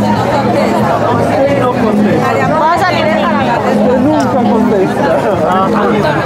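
Crowd chatter: many people talking over one another at a steady, loud level.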